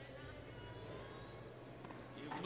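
Faint ambience of a large indoor sports hall: a steady low hum with distant, indistinct voices.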